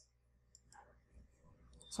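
A couple of faint computer-mouse button clicks in the first second, over near-silent room tone.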